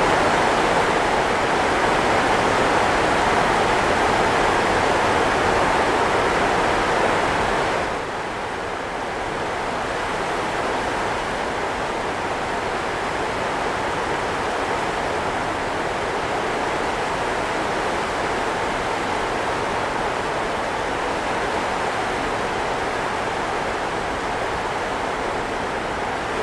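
Steady rushing noise with no speech or tune in it. It drops a little in level and loses some of its hiss about eight seconds in, then holds steady.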